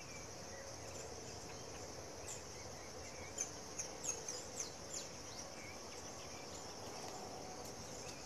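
Faint, steady high-pitched insect chorus, with a few short high chirps between about three and five seconds in.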